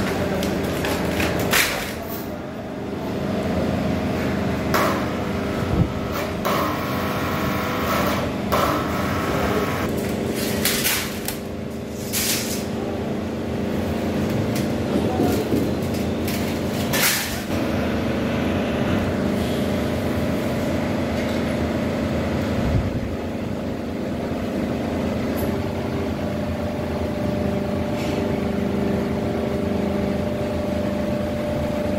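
Double action scrap press humming steadily as its motor runs, with loud metallic clanks at irregular intervals as sheet-metal strips are handled and loaded into the press chamber.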